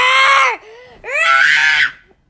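A young person's voice imitating Godzilla's roar: two short, high, screeching yells, the second cut off near the end.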